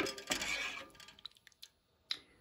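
Wooden spoon stirring creamy chowder in a rice cooker pot: a sharp knock at the start, then about a second of scraping and stirring that fades into a few light taps.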